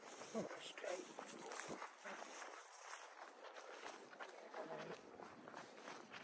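Faint, irregular footsteps brushing through long grass as a person walks.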